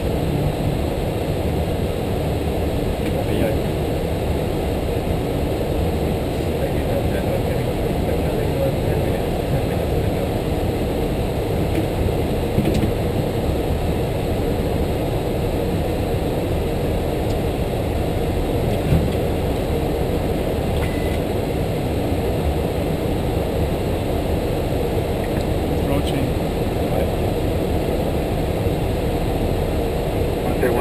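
Steady, even cockpit noise on the flight deck of an Airbus A330-300 in descent: airflow and jet engine sound, mostly low in pitch.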